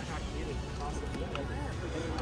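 Faint background chatter of several people over a low, steady rumble.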